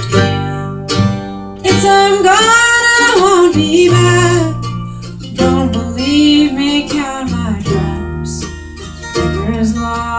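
Acoustic string band playing an instrumental break: a fiddle carries the melody with sliding, bending notes over strummed acoustic guitar, mandolin and upright bass.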